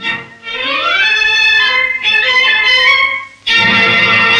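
Orchestral newsreel score led by strings, a phrase climbing in pitch, then a brief drop and a loud new entry about three and a half seconds in.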